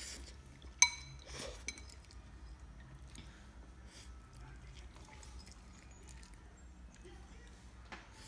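Metal fork clinking against a ceramic bowl: one sharp, ringing clink about a second in and a lighter one shortly after, then faint eating sounds.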